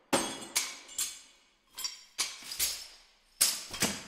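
Sampled heavyweight shakers made from bags of hard objects being shaken, giving a rhythm of about eight clattering, clinking shakes. They often come in pairs about half a second apart, and each dies away quickly.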